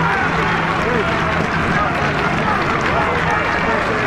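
Football crowd chatter: many voices talking over one another, with no clear words.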